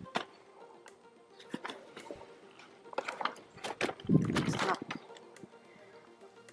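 Evenflo stroller being unfolded by hand: a scatter of plastic and metal clicks and knocks from the frame, with a louder clatter about four seconds in as it opens out. Faint background music runs underneath.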